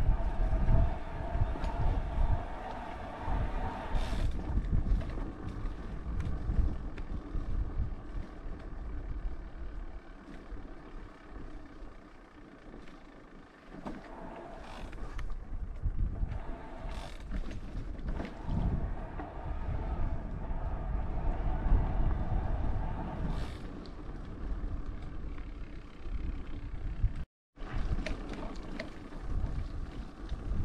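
Wind buffeting the microphone over tyre noise while riding along a dirt and gravel track, with scattered clicks and rattles. A steady hum comes and goes, and the level drops for a while in the middle.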